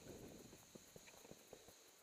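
Faint, irregular soft clicks and crunches of skis moving over packed snow, with a faint steady high whine underneath.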